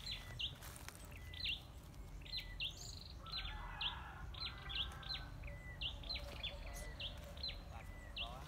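A small bird chirping over and over: short, high, falling chirps, often in pairs, a couple every second, over a low rumble.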